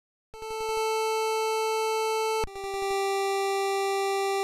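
Chiptune music made in FamiTracker, NES-style synthesized square-wave tones. It begins about a third of a second in with long held notes, the second a step lower about two and a half seconds in. Each note opens with a quick rattling flutter.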